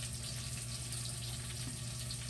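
Chuck roast sizzling softly as it browns in a pot over a gas burner, a steady hiss with a low hum underneath.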